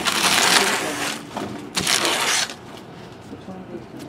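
Trading cards and their packaging rustling and crinkling as they are handled, in two bursts, the first over about the first second and the second around two seconds in.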